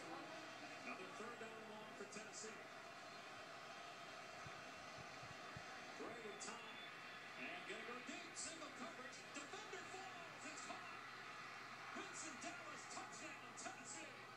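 Faint college football television broadcast sound picked up from the TV's speaker: a commentator's voice over a steady background din.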